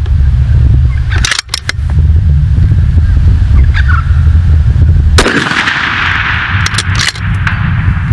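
Bolt-action precision rifle fired from prone: sharp reports, the strongest about five seconds in, over a steady low rumble of wind on the microphone.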